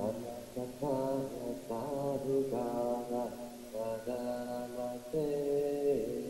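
Buddhist chanting closing the Dhamma talk: slow, drawn-out syllables held on steady pitches, in phrases of one to two seconds with brief breaks between them.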